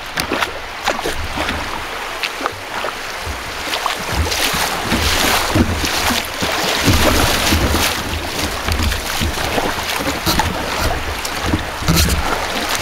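Whitewater rapids rushing and splashing against a kayak's hull, with wind buffeting the microphone. The water gets louder about four seconds in as the kayak runs into rougher water.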